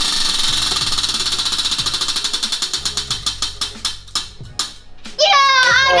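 Spinning prize wheel, its flapper clicking against the pegs around the rim: rapid clicks at first that slow steadily as the wheel coasts down, stopping about five seconds in.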